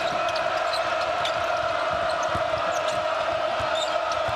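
A basketball being dribbled on a hardwood court, its short bounces heard over the steady noise of an arena crowd, with brief high-pitched squeaks scattered through.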